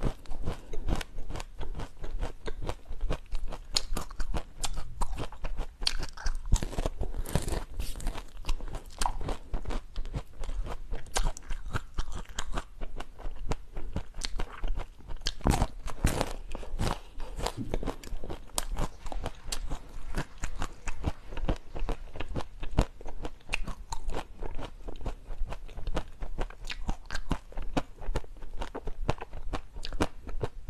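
Close-miked biting and chewing of hard, frozen purple ice sticks: a fast, continuous run of crisp crunches.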